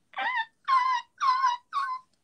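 Four short high-pitched vocal notes in quick succession, each bending slightly in pitch.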